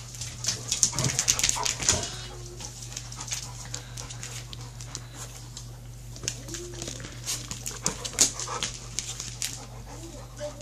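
A large husky-type dog's claws clicking on a laminate floor as it walks about, thickest in the first two seconds and again near the end, with a few brief dog whines.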